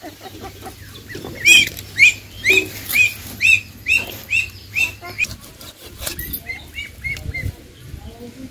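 A bird calling close by: a quick series of short, arched, high notes about two a second, loud at first and then fading away.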